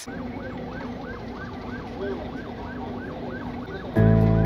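Electronic siren yelping: a fast, even rise and fall in pitch, about three cycles a second, over a low rumble.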